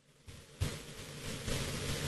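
Brief silence, then the outdoor ambient noise of a football pitch picked up by a camera microphone: a soft thump, followed by a steady hiss that grows a little louder.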